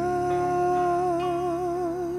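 A male singer holds one long note into a microphone, the vibrato widening in the second half, over a soft sustained accompaniment.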